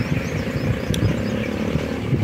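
A motor vehicle engine running steadily nearby, a low rumble with a faint steady hum, and one brief click about a second in.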